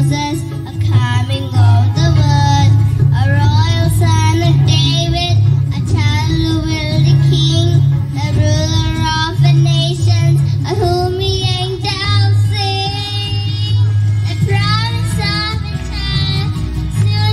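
A young girl singing a melody into a microphone over a recorded musical accompaniment with a steady bass, amplified through stage speakers.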